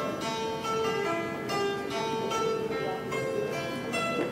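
Đàn tranh, the Vietnamese plucked zither, played solo: a melody of single plucked notes, about two or three a second, each ringing on and fading.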